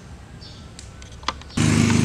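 Low background hum with a few faint high chirps and a single click, then a loud, steady small engine, a motorcycle-type engine running, cuts in abruptly about a second and a half in.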